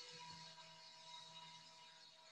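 Near silence: faint steady hum and hiss of an open audio line.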